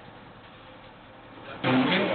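Faint steady background hiss, then about one and a half seconds in a sudden cut to loud, noisy field audio with voices talking over it.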